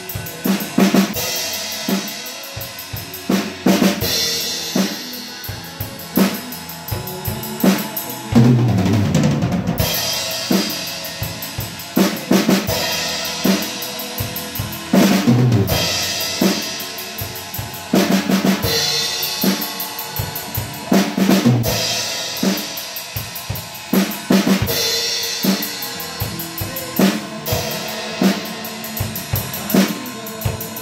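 A drum kit played in a steady beat on bass drum and snare, with cymbal crashes every few seconds.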